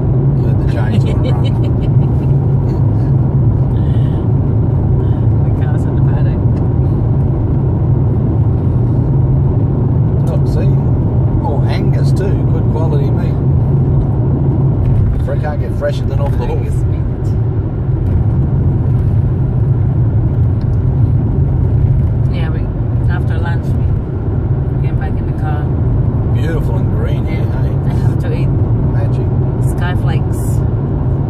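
Steady engine and road-noise rumble inside the cabin of a car travelling on the road, with now and then a little quiet talk from the passengers.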